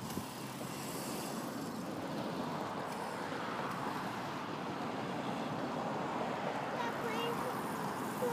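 Steady outdoor background noise of road traffic, even and without distinct events.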